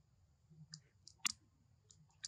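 Four short, sharp clicks against a faint low background; the third, a little past the middle, is the loudest.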